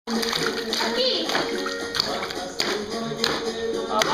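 Water splashing in a plastic baby bathtub: a series of sharp slaps, several in a row about half a second apart, as the baby beats the water with a coat hanger. Music and voices play underneath.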